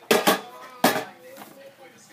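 Hard knocks and clatter of a hand rummaging in a small locker and taking out an aerosol deodorant can: three sharp knocks within the first second, then a fainter rattle.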